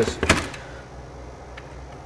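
The tail of a spoken word, then steady low background hum with no distinct events.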